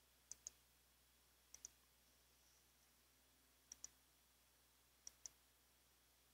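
Computer mouse button clicking faintly: four pairs of quick clicks, spaced about a second or more apart, over near silence.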